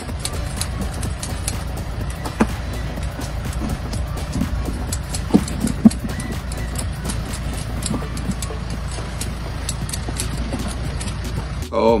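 A steady low rumble with scattered light clicks and knocks, the two sharpest about five and six seconds in.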